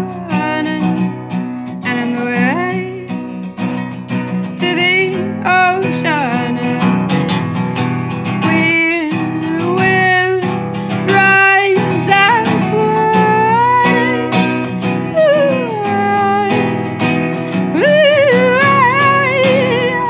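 A woman singing live over her own acoustic resonator guitar, the voice holding long notes that slide up and down in pitch.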